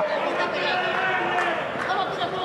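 Boxing-arena crowd: several voices calling out at once over a steady murmur of spectators.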